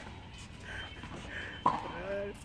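Tennis ball struck once by a racket on an indoor hard court, a sharp hit near the end, over a low, quiet background.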